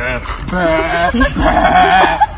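People laughing in several drawn-out, wavering, high-pitched cries.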